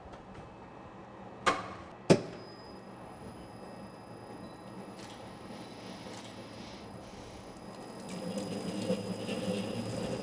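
Prática planetary mixer beating corn-cake batter with its wire balloon whisk: two clicks about a second and a half and two seconds in, then a steady motor hum with a thin high whine, growing louder about eight seconds in.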